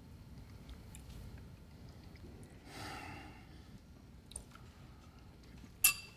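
Quiet room tone with a soft breath about halfway through. Near the end a metal spoon clinks once, sharply, against a ceramic bowl.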